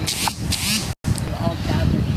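A voice speaking at a live gathering. In the first second two brief hissing rustles cover the audio, and the sound cuts out completely for a split second about halfway through, like a dropout in a phone stream.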